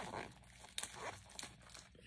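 Crinkling and rustling as a small pouch of wrapped candy, mints and cough drops is handled, with a couple of short sharp clicks.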